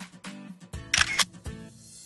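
Background music with a camera shutter sound effect: two quick shutter clicks about a second in.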